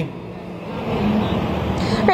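Road traffic noise: the steady rush of a passing vehicle, growing gradually louder.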